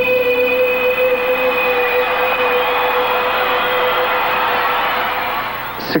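Live rock band holding one long, steady final note under a wash of noise; it breaks off abruptly near the end.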